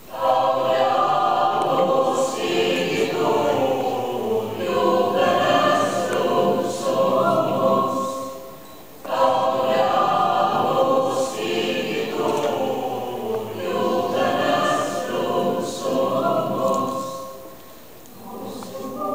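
Choir singing in two long phrases, with a brief break about halfway through. The singing dies away just before the end.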